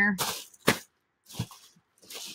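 Plastic crinkling as plastic packing material is pushed into a plastic trash bag, with one sharp crack about a second in and short rustles after it.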